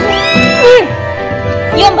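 Background music with steady held notes under a short, gliding vocal sound in the first second and a brief murmured 'hmm' near the end.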